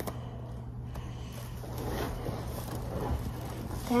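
Quiet room tone: a steady low hum with faint rustles, no clear voice.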